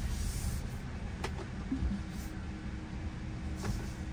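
Low, steady cabin rumble of a Tesla electric car moving slowly, heard from inside. There is a sharp click about a second in and a fainter one near the end, and a faint steady hum comes in from about halfway.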